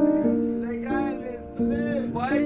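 Background music: acoustic guitar chords, changing every half second or so.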